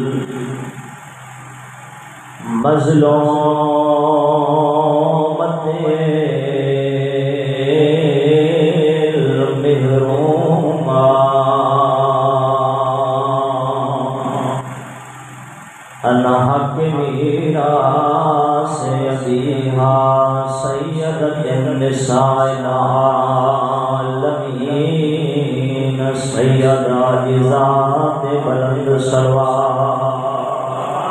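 A solo male voice chanting a slow, melodic religious recitation through a microphone and loudspeaker, holding long notes. It breaks off briefly twice, once just after the start and again about halfway through.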